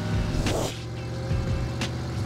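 Cartoon car engine sound effect running steadily as a low hum, with a brief sharper sound about half a second in and another near the end.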